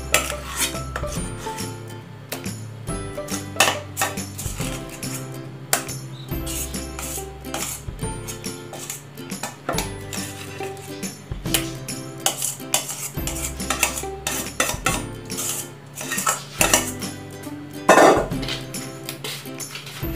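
Background music with steady held chords, with a metal spoon clinking now and then, a few sharper clinks standing out, as the chicken sausage mixture is spooned out.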